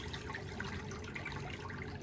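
Steady low background noise with no clear event in it.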